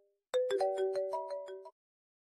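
Mobile phone ringtone: a quick melody of clear notes that starts a moment in and cuts off suddenly after about a second and a half.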